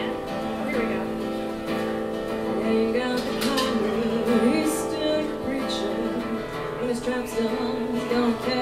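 Acoustic guitar strummed live, playing the opening of a folk song, with a voice coming in about three seconds in.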